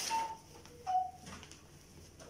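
A Bible being opened and its pages leafed through: a brief paper rustle at the start, followed by two short thin high-pitched whines about a second apart.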